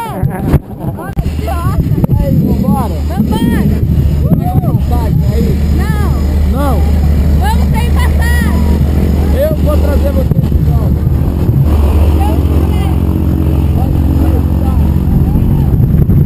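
Jump plane's engine and propeller running steadily close by, a loud even hum that sets in about a second in. Voices call out over it.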